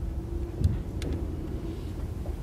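Low steady room rumble with a faint hum, and two light clicks in the first half.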